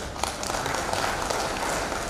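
Audience applauding: a dense, steady clatter of many hands clapping.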